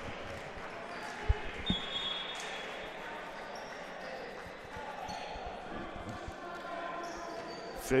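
A volleyball bouncing on a hardwood gym floor, with two thuds about a second in and a few lighter knocks later, over a steady murmur of voices in a large gymnasium.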